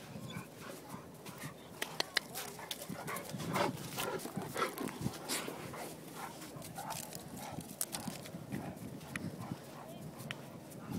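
Newfoundland dogs vocalizing as they play, mostly through the middle of the stretch, among scattered sharp clicks.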